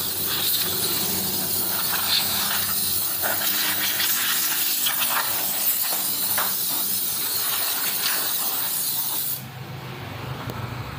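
Spray gun spraying finish, a steady hiss over a low hum. The spraying stops about nine seconds in, leaving the hum.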